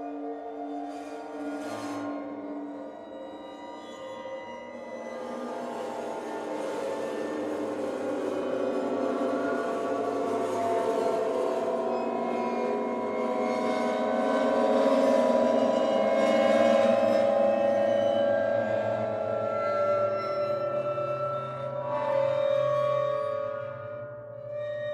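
Chordeograph, a field of over 30 strings set vibrating by bars of metal, wood or glass: a dense mass of sustained, overlapping ringing tones, like a singing bowl or gong, slowly swelling to its loudest about two-thirds through, then easing.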